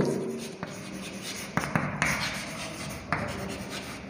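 Chalk writing on a blackboard: scratchy strokes with a few sharp taps of the chalk against the board.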